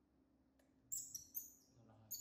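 A baby macaque giving three short, high-pitched squeaky chirps in quick succession about a second in.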